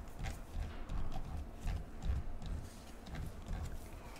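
Irregular light clicks and soft low thumps of baseball cards being handled with gloved hands at a desk.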